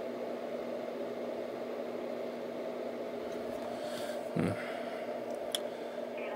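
Steady hum and hiss of running equipment, with a short murmured 'hmm' about four seconds in and a faint click near the end.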